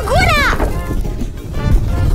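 A short falling vocal cry, then a rushing fire-blast sound effect with background music.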